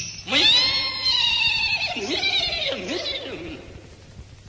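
A horse whinnying: one long call that starts high, wavers and falls, then fades away.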